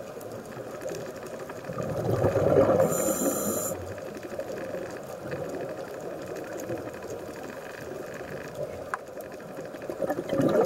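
Scuba diver's regulator heard underwater: a louder burst of exhaled bubbles from about two seconds in, lasting about two seconds, over a steady muffled underwater noise, with a short high hiss about three seconds in and the next exhale starting at the very end.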